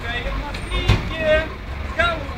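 Brief snatches of people's voices over a steady low rumble of street traffic, with one sharp click just under a second in.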